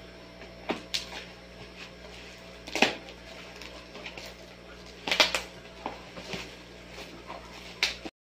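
Scissors cutting through packing tape and bubble wrap on a cardboard package, with scattered sharp crackles of plastic and cardboard being handled; the loudest come about three seconds in and just after five seconds.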